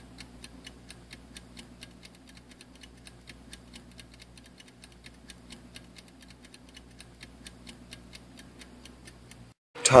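A rapid, steady ticking, about five ticks a second, over a faint low hum. It cuts off suddenly near the end.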